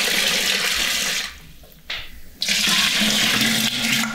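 Water running from a tap into a plastic jug. It stops a little over a second in, and water runs again from about two and a half seconds.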